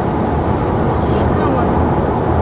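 Steady road and engine noise inside a moving car's cabin.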